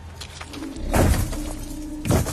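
Film sound design of a giant wolf moving through the forest: a loud crash of splintering wood about a second in and another right at the end, over a low held music note.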